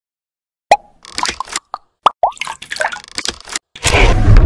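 Logo-animation sound effects: a quick string of watery plops and clicks, some with short pitch glides, starting under a second in, then a loud swell of noise near the end.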